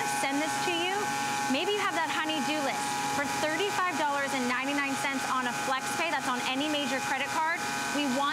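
Kärcher Follow Me 1800 PSI electric pressure washer running steadily, its motor whine under the hiss of the spray inside a clear plastic column, with people talking over it.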